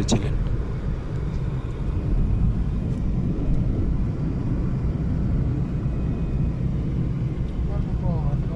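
Steady engine and road noise inside the cabin of a moving Nissan Tiida, mostly a low rumble.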